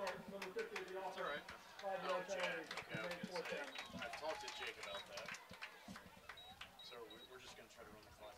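Indistinct chatter of people around an outdoor football field, too faint to make out words, with scattered light clicks and knocks. The voices are louder in the first half and fade toward the end.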